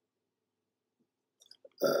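Near silence with a couple of faint clicks, then a man's drawn-out hesitation sound "uh" near the end.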